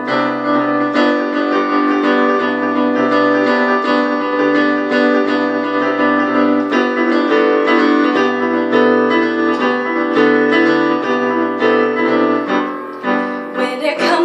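Electric keyboard with a piano sound playing an instrumental passage of held chords under a simple melody, without singing.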